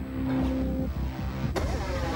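Film trailer sound design: a low rumbling drone under a held low note, then a sudden hit with a falling sweep about one and a half seconds in.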